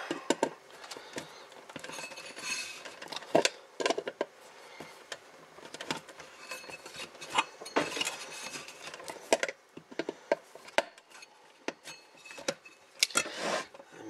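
Pliers pressing a plastic strain-relief grommet on a power cord into the hole of a power supply's metal back panel: irregular clicks, scrapes and rubbing, with a few louder snaps. The cord has been built up with electrical tape, making it a tight fit.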